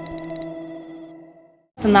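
Electronic transition jingle for an animated title card: a held chord of steady tones with quick high blips over it, fading away over about a second and a half.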